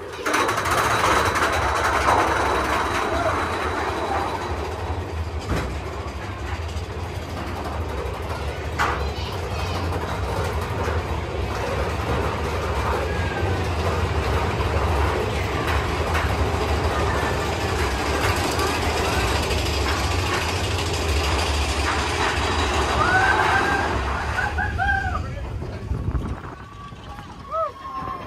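Mine-train roller coaster running fast along its track, a loud steady rumble and clatter from the train, with riders' voices calling out a few times, most near the end.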